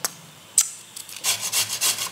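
A few sharp knocks, then a beetroot being grated on a metal hand grater: quick rasping strokes, several a second, starting a little over a second in.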